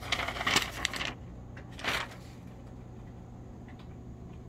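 Rustling and light clicks of a paper target and small objects being handled on a glass counter, mostly in the first second with one more short rustle about two seconds in, over a steady low hum.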